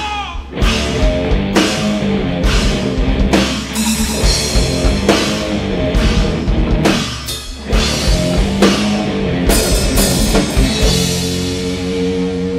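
Live rock band playing heavy alternative rock: a drum kit hitting crashes about once a second over electric guitars and bass, with no vocals. It drops out briefly about seven seconds in, and near the end the drums stop and a single guitar note is held ringing.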